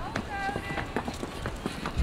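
Hooves of a Fjord horse striking brick paving as it comes forward at a walk or slow trot: a series of separate, uneven clops.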